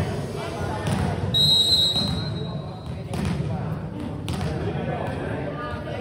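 A referee's whistle gives one short steady blast about a second and a half in, the signal for the serve. A few sharp volleyball thuds ring in the hall around it, over the chatter of players and spectators.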